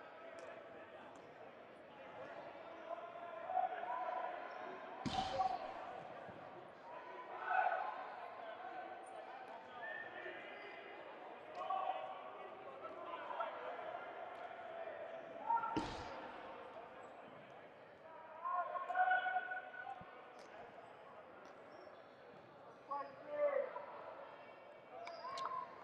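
Indistinct voices echoing in a large gymnasium, with two sharp impacts of a rubber dodgeball striking the hardwood court, about five seconds in and again near the sixteenth second.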